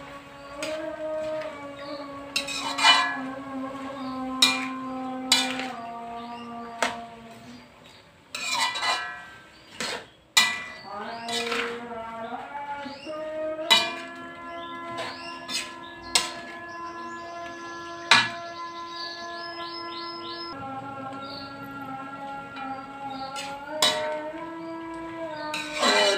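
A metal spatula scrapes and clinks against an aluminium wok at irregular intervals as leafy vegetables are stirred. Background music with long held notes plays underneath.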